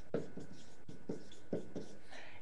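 Handwriting: a run of short pen strokes, about three a second, as words are written out.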